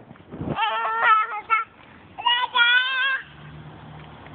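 A baby's wordless, high-pitched vocalising: a loud broken call about half a second in, then a second call held for about a second from about two seconds in.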